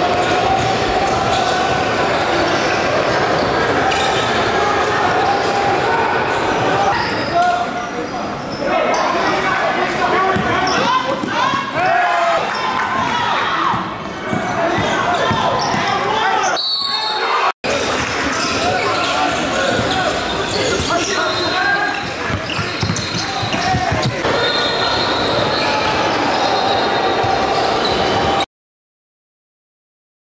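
A basketball dribbling and bouncing on a hardwood gym floor, with indistinct voices and shouts echoing through a large hall. The sound drops out for an instant about two-thirds of the way through.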